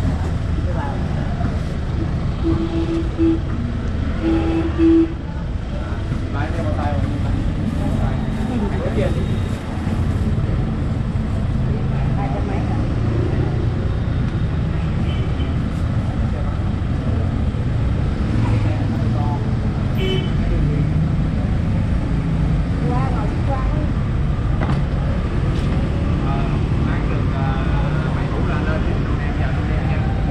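Street traffic running steadily, a low engine rumble from passing vehicles, with a vehicle horn giving two short beeps a couple of seconds in.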